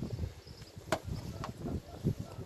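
Metal hive tool prying and shifting the wooden frames of an open beehive. There are small knocks and scrapes, with a sharp click about a second in and another click half a second later.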